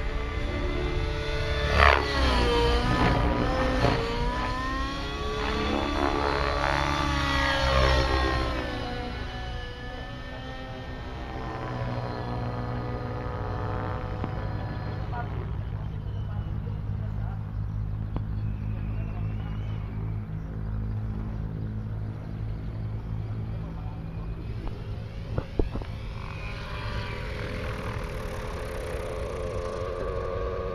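Radio-controlled model helicopter flying overhead, its pitch swinging up and down over the first nine seconds, then settling into a steadier, quieter drone.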